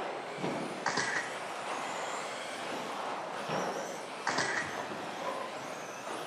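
Electric 1/10-scale 2WD stock-class RC buggies racing on a turf track: steady tyre noise with faint high motor whines rising and falling as they accelerate and brake. A couple of sharper knocks, about a second in and about four seconds in.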